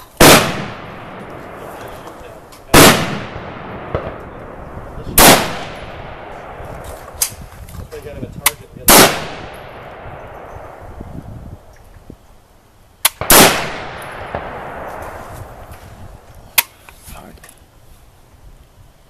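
Armalite AR-180 rifle in 5.56×45 mm fired in slow single shots: five loud reports a few seconds apart, each followed by a long fading echo. Several sharper, quieter cracks fall in between.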